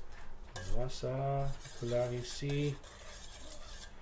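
A metal utensil stirring yeast, sugar and warm water in a stainless steel bowl, scraping against the metal. A man's voice sounds a few wordless notes in the first half, then only the stirring remains, quieter.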